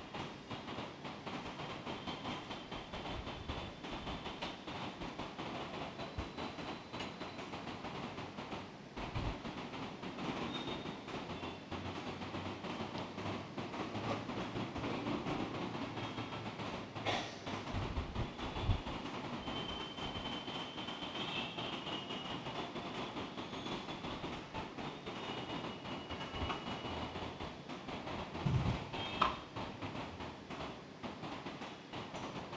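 Steady low background noise in the church, with a few soft knocks and a clink or two of the altar vessels as the chalice is purified after communion.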